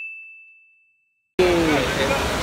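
A single bright ding: a bell-like chime ringing at one high pitch and fading out, laid in over silence as an edited sound effect.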